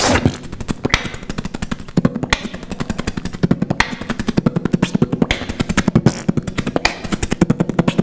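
Human beatboxing: a fast, dense run of mouth-made clicks and drum sounds over a steady low bass tone.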